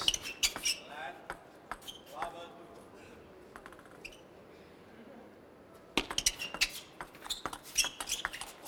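Table-tennis ball clicking sharply off paddles and table in a fast rally, a quick run of hits starting about six seconds in after a quieter stretch; a few lighter ball taps near the start.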